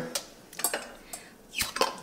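Metal clicks and clinks of a small tool prying at the lid of a glass home-canning jar, with a sharper pop about a second and a half in as the lid's vacuum seal gives way.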